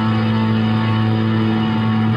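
Fujigen Stratocaster electric guitar played through a Zoom G2.1Nu multi-effects unit on its 'Leading' patch, with sustained notes ringing steadily.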